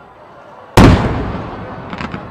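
Aerial firework shell bursting: one loud boom about three quarters of a second in, dying away over a second or so.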